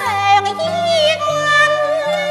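A female Cantonese opera singer sings in a high voice. She slides down steeply into a long, wavering held note. Under her is instrumental accompaniment with a low line of sustained notes that step from pitch to pitch.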